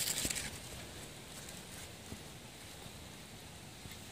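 A metal spoon scraping and digging into loose potting soil, one short gritty scrape right at the start, then only faint small rustles and ticks.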